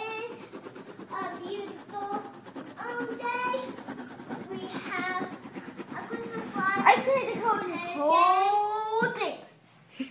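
A young child's voice babbling and half-singing in short phrases, with one long, drawn-out sliding call about eight seconds in.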